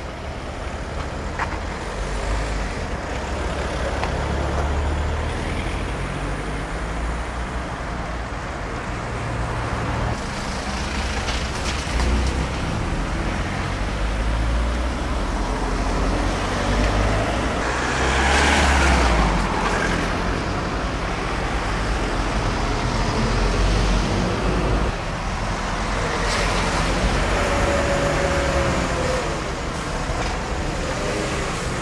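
Road traffic going past: a continuous low rumble of vehicles, with one louder passing vehicle a little past the middle.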